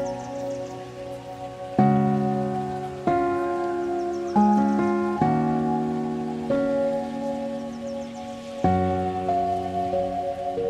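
Instrumental break of a slow cover song: sustained chords struck every one to two seconds and left to ring and fade, with no singing.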